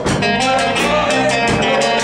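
Live band playing: guitars over a drum kit, with cymbal strokes keeping a steady beat.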